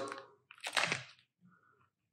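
A brief clicking rattle about half a second in, as a battery is pried out of a TV remote's battery compartment.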